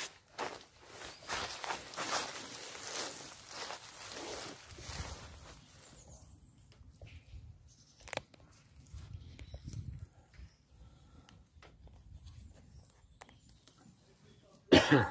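Footsteps and rustling as a person moves about and handles gear on the bank, busiest in the first six seconds and quieter after, with a single sharp click about eight seconds in.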